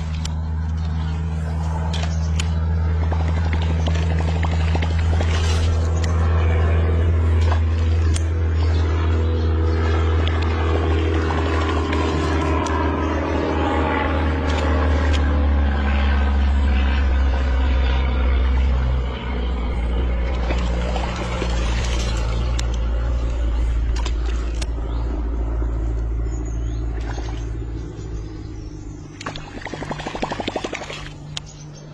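A low, steady engine-like hum with several pitches stacked together. In the middle its pitch sweeps up and back down, and sharp clicks come and go throughout.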